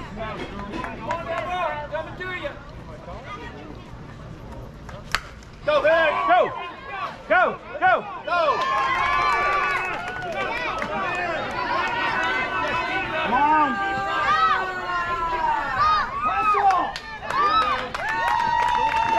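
A crowd of parents and children at a youth softball game shouting and cheering, many voices overlapping, after a quieter stretch of scattered talk. A single sharp knock comes just before the shouting breaks out, about five seconds in.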